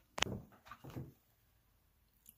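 Handling noise as a small plastic drone is picked up and turned in the hand: a sharp click, then a few soft knocks and rubs within the first second, then quiet.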